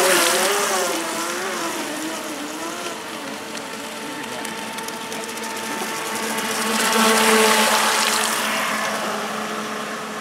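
Pro Boat Shockwave 26 RC boat's brushless electric motor whining as the boat runs at speed, its pitch wavering with throttle and turns, over the hiss of spray. It is loudest as the boat passes close at the start and again about seven seconds in.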